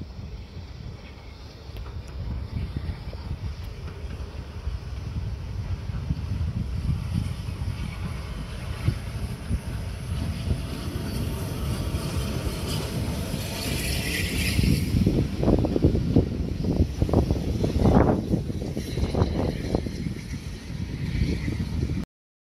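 Bulleid light pacific steam locomotive 34070 approaching and passing with its train of coaches, heard through heavy wind buffeting on the microphone. A hiss rises a little past the middle, then the train's rumble surges loudest near the end as it goes by.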